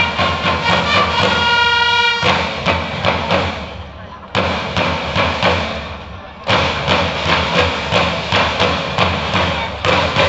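Large marching drums played in a quick, even beat, under a held musical chord that cuts off about two seconds in. The drumming dies down and comes back in suddenly and loudly twice.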